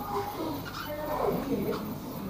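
Indistinct voices of people talking, with pitch that rises and falls.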